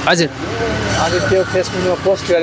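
People talking, over a steady low hum.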